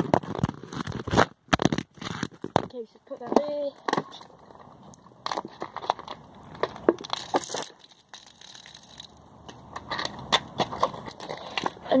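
Plastic drink bottle being handled and shaken out, with irregular crackling clicks and knocks from its thin plastic.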